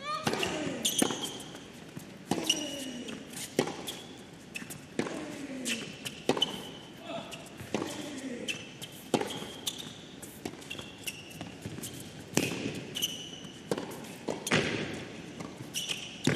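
Tennis rally on an indoor hard court: a serve, then racket strikes on the ball roughly every second and a half, with short high squeaks, likely shoe squeaks on the court surface, between the shots.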